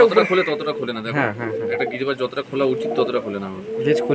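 Domestic pigeons cooing over one another, with people's voices mixed in.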